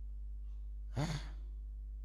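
A man's short sigh into a handheld microphone about a second in, breathy with a brief voiced tail, over a steady low electrical hum from the sound system.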